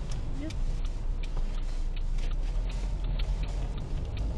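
Car running along the road, heard from inside the cabin: a steady low engine and road rumble.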